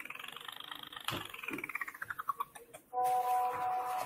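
Electronic sound effect from a clip's soundtrack: a pulsing tone that rises and then falls in pitch over about two and a half seconds, followed about three seconds in by a steady held tone.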